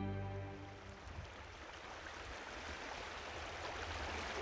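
Soft background music fades out within the first second, giving way to the quiet, steady rush of a small creek running over shallow riffles.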